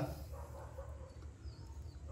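Quiet outdoor background with a steady low hum and a faint, short, high bird chirp about three-quarters of the way through.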